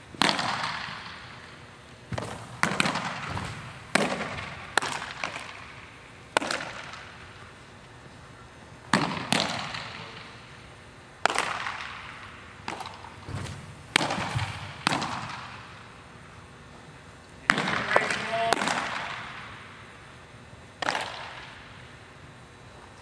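Baseballs smacking into catchers' mitts during a pitching session, about eighteen sharp pops at irregular intervals, sometimes two or three close together. Each pop echoes and dies away over about a second in the large indoor hall.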